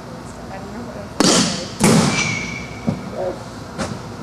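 Softball batting practice: two loud, sharp impacts about half a second apart, a bat striking a softball and the ball hitting something hard, each ringing out briefly in a large hall. A short ringing tone follows the second impact, and there are a couple of lighter knocks later.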